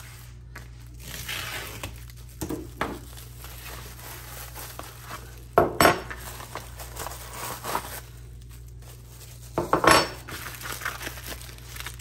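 Plastic wrap and packaging rustling as a parcel is cut open and unwrapped, with two sharp clanks of flat metal brackets being set down on a wooden workbench, one near the middle and one later.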